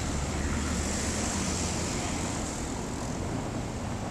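Motorcycle engine running steadily at low speed, an even low hum, with road and wind noise.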